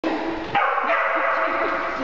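Shetland sheepdog barking excitedly and almost without a break from about half a second in, a high, dense run of barks.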